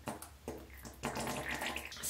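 Ketchup squeezed from a plastic squeeze bottle into a plastic tint bowl: a few short wet squirts, then a steadier squirting from about a second in.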